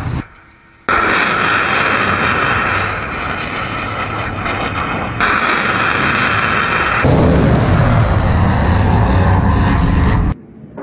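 Surface-to-air missiles launching from vertical tubes: a loud, continuous rocket-motor rush with deep rumble that starts abruptly about a second in. The sound shifts sharply twice, around five and seven seconds, as one launch gives way to another.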